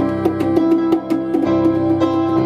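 Live jam music: a keyboard synthesizer and a melodica hold sustained notes over hand-struck conga beats, several drum strikes a second.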